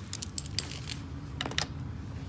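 Metal chain slip collar on a dog clinking and jingling as the leash is clipped on: a run of sharp metallic chinks, then a second brief cluster about a second and a half in.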